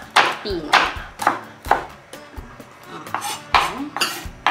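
Kitchen knife chopping a chili on a cutting board, with sharp knocks about twice a second at an uneven pace.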